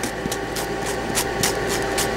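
Coarse-grit nail file rasping in quick back-and-forth strokes, about five a second, across the tip of a nail to file off the overhanging edge of a vinyl nail wrap. A steady low hum runs underneath.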